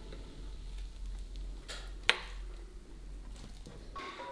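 Quiet handling at an open electric heart-shaped waffle iron, with one sharp click about two seconds in and a fainter one just before it, over low room tone.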